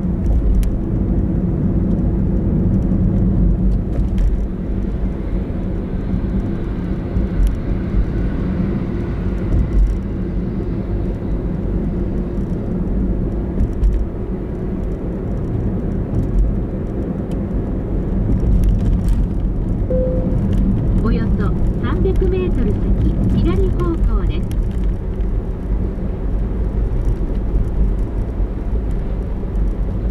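A car driving slowly on a paved road, its engine and tyre noise a steady low rumble. About twenty seconds in there is a brief higher-pitched wavering sound.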